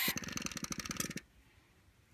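The scale Olds hit-and-miss engine's buzz coil vibrator chattering rapidly, then cutting off about a second in as the flywheel is turned and the points open, breaking the coil circuit.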